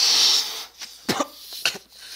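A person spluttering and coughing: a loud breathy burst at the start, then two short, sharp coughs past the middle.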